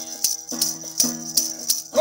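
Sindhi tamburo, a long-necked gourd lute, strummed in a steady drone pattern between sung lines. A bright rattling accent falls on each stroke, about twice a second.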